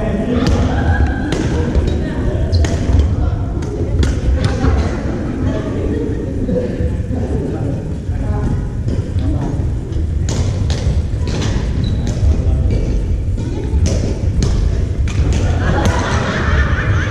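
Badminton rackets striking a shuttlecock in rallies: sharp smacks at irregular intervals, several in quick succession around the middle. Indistinct voices of other players echo through a large gymnasium over a steady low rumble.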